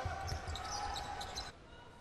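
Basketball game sound in an arena: crowd noise with a ball bouncing on the court. It drops noticeably quieter about one and a half seconds in.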